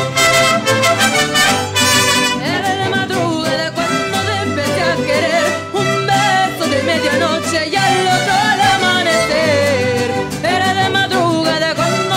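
Mariachi ensemble of violins and guitars playing a song; after a short instrumental passage, a woman's lead voice comes in about two and a half seconds in, singing with a wavering vibrato over the strings.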